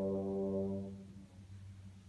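Symphony orchestra holding a low sustained chord that dies away about a second in, leaving only a soft low held note.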